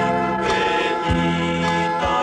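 Music: a Wallisian-language song with group singing over sustained accompaniment.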